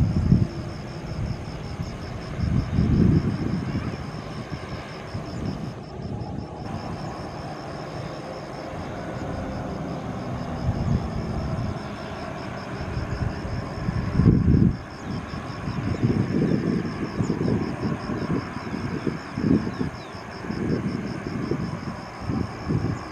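Jet engines of a Boeing 737-800 (CFM56-7B turbofans) running at low power as the airliner rolls along the runway after landing. Repeated gusts of wind buffet the microphone and are the loudest peaks.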